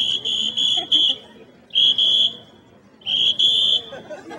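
A high-pitched whistle blown in sharp blasts: a quick run of short toots in the first second, two more around the middle, then one longer blast near the end.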